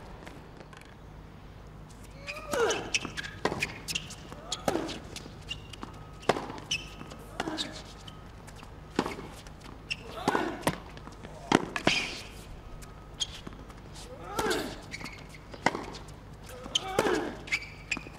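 Tennis rally on a hard court: a racket hits the ball roughly every second and a half, about a dozen times, with ball bounces between hits. Players let out short grunts on several of the shots.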